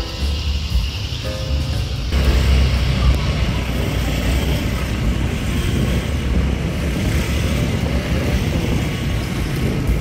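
Music over a low rumble for about two seconds, then a sudden change to the steady low rumble and hiss of a car driving slowly uphill, with music faint beneath it.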